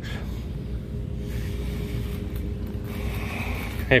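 Steady low rumble of a plastic shopping cart rolling across a hard store floor, with a faint steady hum underneath.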